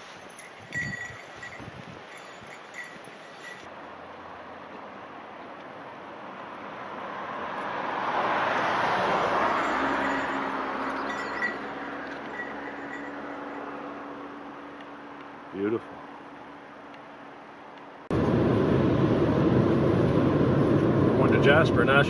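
A vehicle passing by, rising to a peak and fading away over several seconds. Near the end, a sudden switch to the steady road noise heard inside a moving car.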